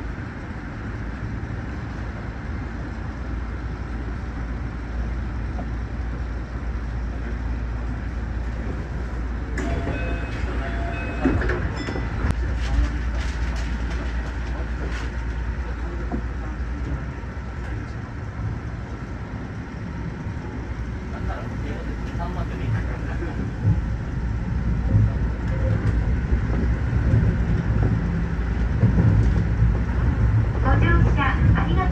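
Keio Line electric train heard from just behind the driver's cab: a steady low rumble of wheels and running gear as it pulls away and gathers speed. A run of clicks and knocks over track joints and points comes in the middle, as an oncoming train passes on the next track, and the sound grows louder near the end.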